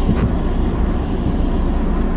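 Steady low rumble of a car being driven, heard from inside the cabin.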